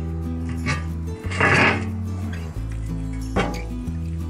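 Background music with steady low bass notes. About one and a half seconds in, a short loud scraping clank of a rusty steel manhole cover being lifted off its frame, and a sharp knock a little before the end.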